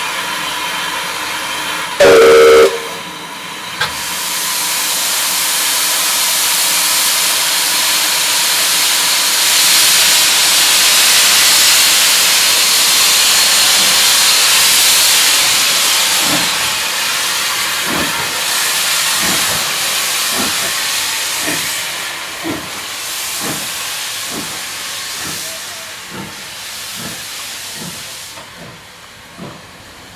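Saddle-tank steam locomotive 'Victor' gives one short, very loud blast on its whistle, then a long hiss of escaping steam that swells and dies away. Regular exhaust chuffs follow, quickening and fading as the engine pulls away.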